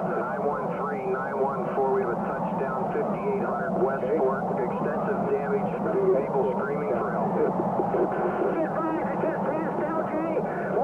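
Several indistinct voices talking over one another without pause: layered two-way police and emergency radio traffic.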